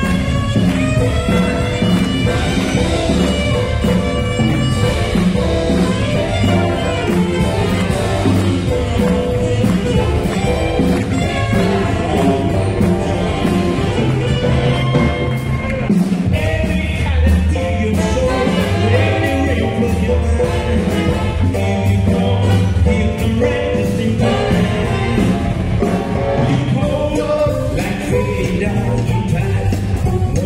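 Live saxophone rock-and-roll band playing: baritone, tenor and alto saxophones over electric guitar and drums, with a brief break in the bass and beat about halfway through.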